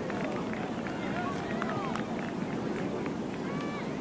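Indistinct, distant shouts and calls from soccer players and spectators, with no clear words, over a steady outdoor background noise.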